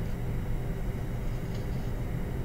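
Steady low background hum with no speech.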